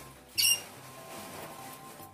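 Faint background music with a short high squeak about half a second in, followed by a faint hiss as body spray is sprayed onto the neck.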